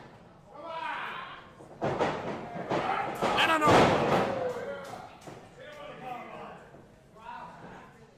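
Open-hand chops smacking a wrestler's bare chest, a few sharp slaps, with crowd members shouting in reaction in a large hall.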